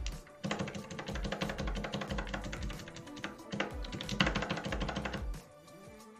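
Rapid computer-keyboard keystrokes, a quick run of clicks starting about half a second in and stopping near the end, as text in a code editor is navigated and selected.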